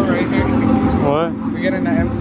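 Indistinct voices of people talking, over a steady low rumble of idling car engines.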